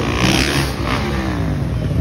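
Freestyle motocross dirt bike engine revving as the rider launches off a kicker ramp, its pitch then gliding down.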